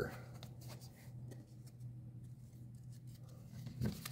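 Faint rubbing and light ticks of trading cards being handled and set down on a table, over a low steady hum.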